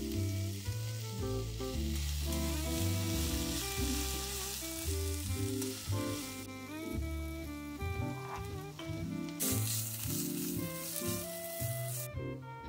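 Shredded cabbage, carrot and onion sizzling in a hot nonstick frying pan while being stirred with a wooden spatula. The sizzle eases off about halfway through and comes back louder near the end.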